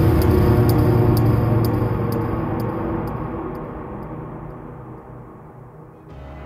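A low, noisy sound-design transition in the documentary's soundtrack, fading steadily away over about six seconds, with scattered sharp crackles in its first half.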